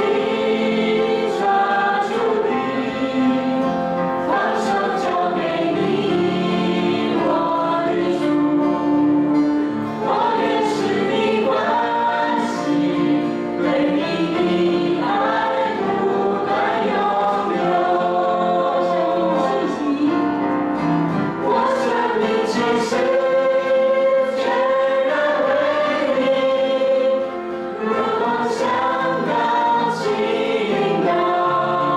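A small group of mixed male and female voices singing a Mandarin worship song together through microphones, accompanied by strummed acoustic guitar.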